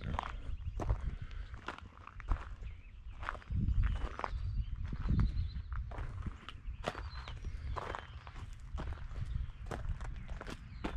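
Footsteps crunching on loose gravel at an even walking pace, about two steps a second, with a low rumble loudest about four seconds in.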